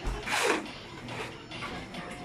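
Manual concrete work: a short, noisy rush of wet concrete being handled about half a second in, followed by quieter scattered knocks and scrapes.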